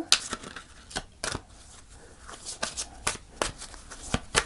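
A deck of oracle cards being shuffled by hand: soft, irregular card clicks and flicks as the cards slide against each other.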